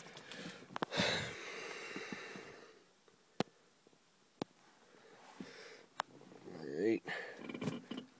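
A person shifting about in a cramped truck cab: rustling at first, then three sharp clicks in a quiet stretch, and a drawn-out groan near the end. The engine is not yet running.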